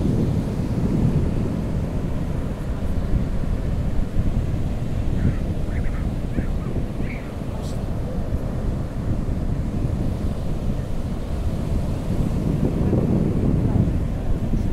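Ocean surf breaking and washing up a sandy beach, heavily mixed with wind buffeting the microphone as a steady low rumble.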